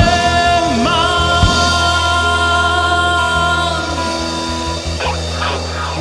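A worship band playing a Persian worship song live. A singer holds one long note from about a second in, over drums and a steady low bass.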